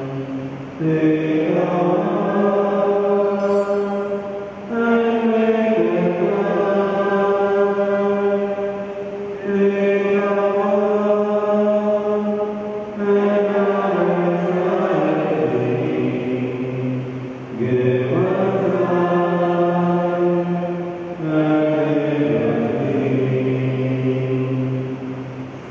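A hymn sung slowly in phrases of about four seconds, the melody stepping between long held notes, with a short break between phrases. It is the singing during the preparation of the gifts at Mass, the offertory hymn.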